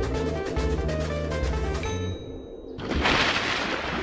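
Dramatic background music with a regular drum beat that stops about halfway through. About a second later comes a loud, splashy rush of noise as a large can of red paint is dumped from a balcony onto a man.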